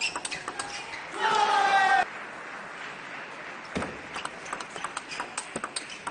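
A celluloid-plastic table tennis ball clicks sharply off bats and table during a rally, cut across about a second in by a loud shout lasting about a second. Scattered ball ticks follow later.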